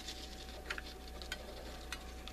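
A few faint, short ticks from hot-gluing paper by hand with a glue gun, over a steady faint hum.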